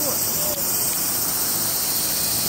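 A steady high-pitched drone of summer insects over the even rushing of a fast, rain-swollen river.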